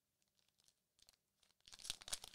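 Foil trading-card pack wrapper being torn open by hand: faint crinkling and tearing, getting louder near the end.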